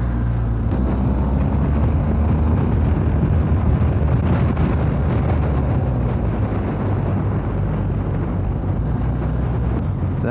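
BMW R1250GS boxer-twin engine running steadily at road speed, with wind rush on the microphone.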